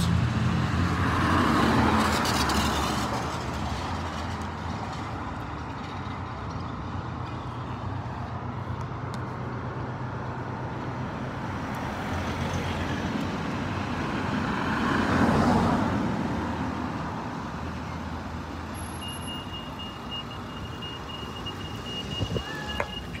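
Street traffic: a steady low engine hum with vehicles passing, one about two seconds in and a louder one around fifteen seconds. A thin, steady high tone comes in near the end.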